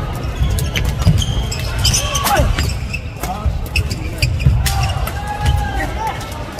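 Badminton play on a wooden sports-hall floor: sharp racket hits on the shuttlecock, shoe squeaks and footfalls, over background voices in the large hall.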